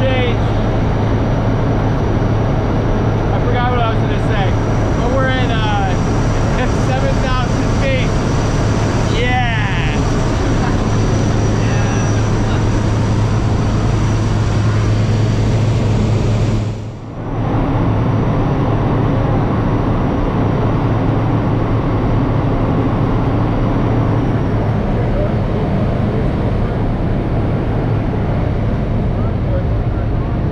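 Engine and propeller of a single-engine high-wing jump plane running steadily in flight, heard inside the cabin as a loud steady drone with a low hum and wind rush. Raised voices come through over it in the first ten seconds or so, and the sound briefly drops away about two-thirds of the way in, then comes back slightly changed.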